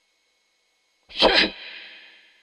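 A man sneezing once, a sharp burst a little over a second in, with a short fading tail after it.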